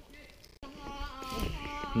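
Faint outdoor quiet, then, after an abrupt cut about half a second in, people's voices at a distance, growing gradually louder.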